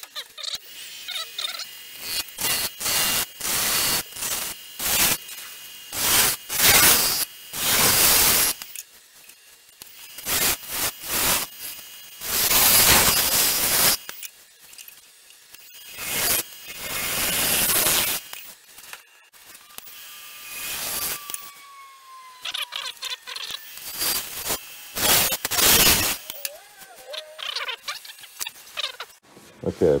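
Bowl gouge cutting a spinning sugar pine blank on a wood lathe: repeated loud rasping, shearing passes, each lasting from half a second to about two seconds, with quieter stretches between them.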